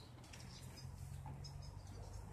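Quiet background: a faint steady low hum with a few soft, light ticks, and no clear single event.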